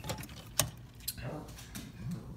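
Handling noise: a few irregular sharp clicks and light taps, spread over about two seconds.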